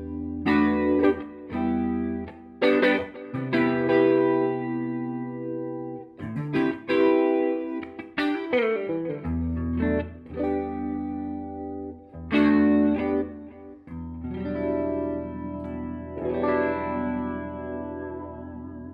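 Reverend Club King RT electric guitar with Revtron pickups, played through a Fender '57 Custom Tweed Deluxe tube amp with effects pedals: a run of strummed chords and single notes, each left to ring, with the last chord dying away near the end.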